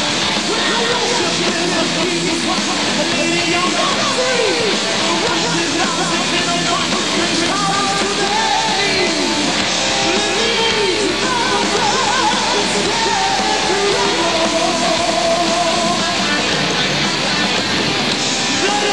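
Heavy metal band playing loud and live: electric guitars, bass and drums, with a melody line whose notes bend up and down in pitch.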